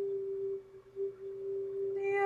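A woman humming one steady, held note with closed lips, dipping briefly just before a second in. It is the opening of her vocal light-language channeling.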